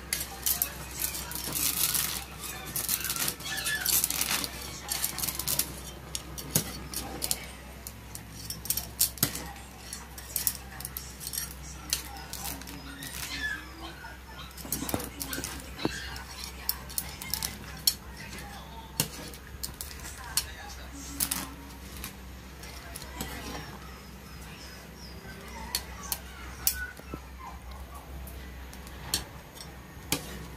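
Metal spoon and spatula clinking and scraping against a large metal wok as pancit noodles are tossed through broth, in frequent irregular sharp knocks that come thickest in the first few seconds.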